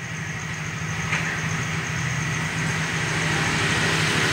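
Steady low hum with a rushing, engine-like rumble that grows slowly louder, and no speech.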